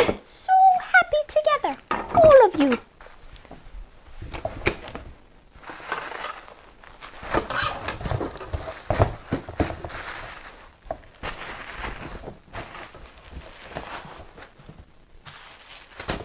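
Bubble wrap and plastic packing crinkling and rustling in irregular bursts as wrapped parts are handled and packed into a cardboard box, with small knocks among them. A short wordless vocal sound comes in the first few seconds.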